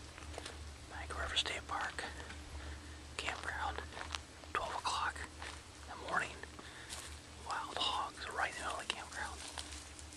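Hushed whispering in short phrases, over a steady low hum.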